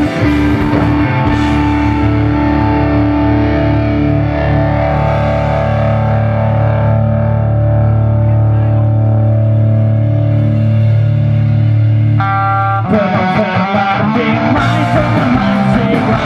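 Live rock band playing an instrumental passage: electric guitars hold sustained chords with no drums, then the full band with drums comes back in about thirteen seconds in.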